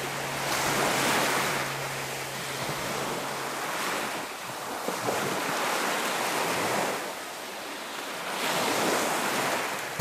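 Surf: small waves washing onto a sandy beach, the wash swelling and easing several times. A faint low hum sounds in the first few seconds, then stops.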